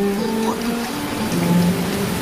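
A slow melody of held notes stepping up and down, over a steady hiss. It is the music excerpt played as a guess-the-film quiz question.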